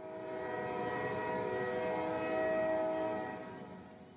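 A sustained chord of several steady tones over a rough, noisy layer. It swells to its loudest about two and a half seconds in, then fades away near the end.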